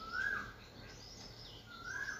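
Two short chirping bird calls in the background, about a second and a half apart, each rising and then falling in pitch, over faint room noise.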